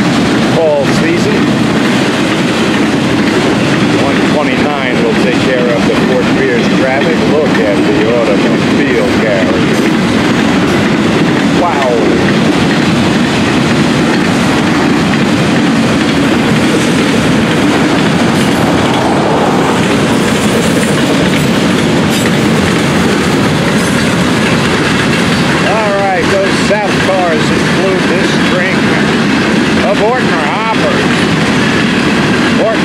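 Florida East Coast Railway freight cars rolling past close by: a loud, steady rumble and clatter of wheels on the rails.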